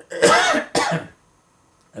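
A man coughing twice into his fist to clear his throat: a longer harsh cough followed closely by a shorter one.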